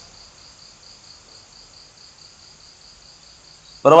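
A faint insect chirp repeating evenly at a high pitch, about five pulses a second, with a man's voice coming in at the very end.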